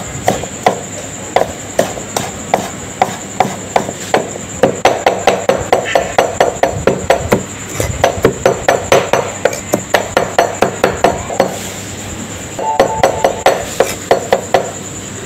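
A large kitchen knife chopping garlic cloves on a chopping board, the blade knocking on the board in a quick, regular rhythm. It starts at about two to three chops a second, speeds up to about five a second, pauses briefly near the end and then starts again.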